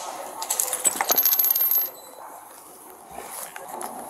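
Metal handcuffs being snapped and ratcheted onto wrists held behind a person's back: a quick, dense run of metallic clicks and jingling for about a second and a half, then quieter handling noise with a few faint clicks.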